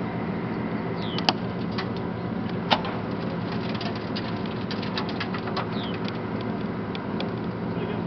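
A vehicle engine idling with a steady low hum, with short bird chirps and a couple of sharp clicks in the first few seconds.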